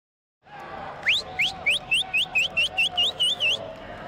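About half a second of silence, then a steady background hum. Over it a bird sings a run of about a dozen short rising whistled notes that come faster as it goes and stop about three and a half seconds in.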